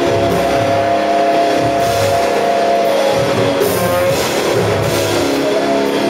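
A live rock band playing loud, with electric guitars holding sustained notes over a drum kit with cymbals.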